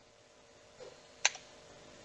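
A single sharp click about a second in, such as a key or button pressed at a computer, over quiet room tone.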